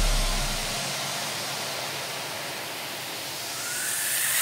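A steady white-noise hiss in the backing track, a synthesised noise sweep between songs. It dies away over the first second, then swells again near the end with a faint rising tone.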